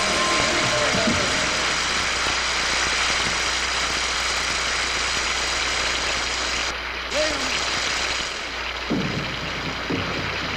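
Studio audience applauding, with a few voices calling out over it. About nine seconds in, drum strokes start on a drum kit.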